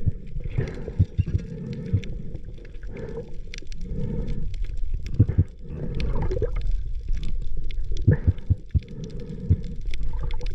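Underwater water noise heard through a camera housing: a low rumble of moving water with many muffled knocks and gurgles as a speared fish thrashes on the spear shaft.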